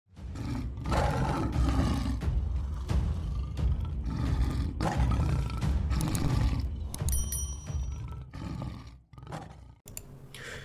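Channel intro sound effect: a big cat's roar laid over dramatic music, in repeated loud surges. A short high-pitched click and chime comes about seven seconds in, and the sound cuts off just before nine seconds.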